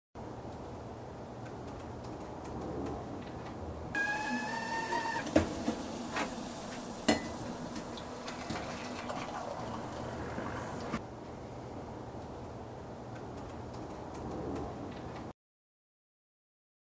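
Stovetop whistling kettle at the boil: a short whistle that rises slightly in pitch over a hiss of steam, with a couple of sharp metal clanks as the kettle is handled on an electric coil stove. The hiss stops about eleven seconds in.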